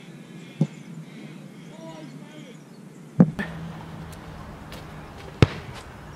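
Quiet open-air background with a couple of softer thumps, then a single sharp, loud thud of a boot kicking an Australian rules football about five and a half seconds in.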